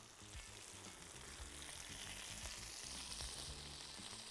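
Faint, steady sizzling of marinated chicken skewers frying in a hot pan, growing slightly louder.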